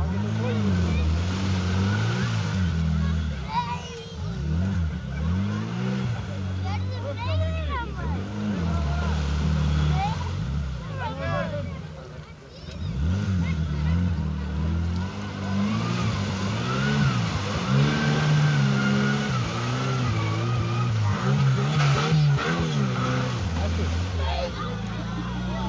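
Off-road competition vehicle's engine revving hard, its pitch climbing and falling again and again as the vehicle works through a mud pit. The revs drop off briefly about twelve seconds in, then build again.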